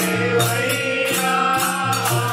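Gujarati devotional song (bhajan) performed live, with voices and harmonium over a steady low drone. Percussion strokes keep a beat about twice a second.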